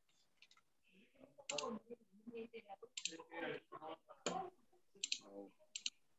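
Computer mouse clicks, short and scattered, over faint, muffled speech.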